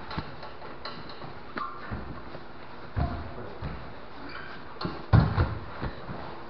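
Irregular thumps of bodies, hands and feet landing on a padded training mat during grappling, with the rustle of gi cloth; the loudest run of thumps comes about five seconds in.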